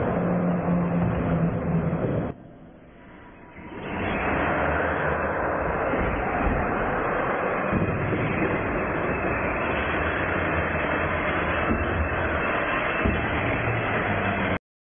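R/C monster trucks running down a drag strip and over ramps: a steady, loud rush of motor and tyre noise, with a short quieter gap about two seconds in.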